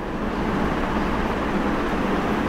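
A steady rushing noise with a low rumble, even and unbroken, starting just as the talk pauses.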